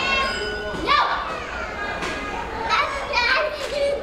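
Children's high-pitched voices calling and shouting, a call about a second in and several more in the second half.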